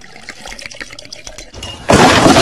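Vodka poured from a bottle into a cocktail shaker, glugging in quick repeated pulses. Just before the end a sudden, very loud burst of noise cuts in.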